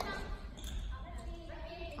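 Echoing voices of players in a large gymnasium, with a few sharp impacts of a volleyball being struck or bouncing on the wooden floor.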